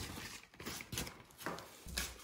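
Faint rustling and soft taps as an old newspaper is handled and moved about on a painted wooden shop counter, a few light knocks about half a second apart.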